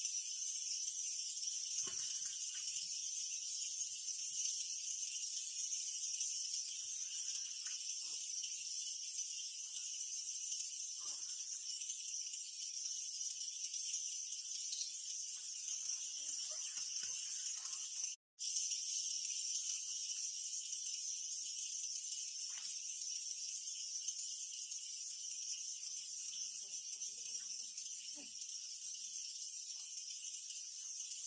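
Steady high-pitched buzzing of a forest insect chorus, with faint scattered clicks and rustles beneath it; the sound cuts out for an instant about 18 seconds in.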